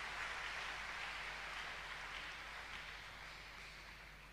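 Congregation applauding, faint and slowly dying away.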